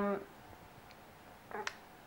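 A woman's speech trails off into a quiet pause of room tone; near the end a single sharp mouth click comes as she draws in to speak again.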